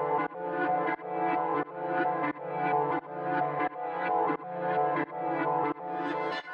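Intro of a dark trap type beat: a filtered melodic loop pulsing evenly about every two-thirds of a second, with no drums or bass yet.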